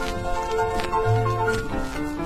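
Instrumental music from a 1951 78 rpm record: held, pitched notes changing every fraction of a second over sustained bass notes, with no voice.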